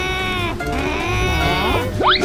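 Two long, drawn-out cartoon-character vocalizations, each rising and then falling in pitch, over background music with a steady beat.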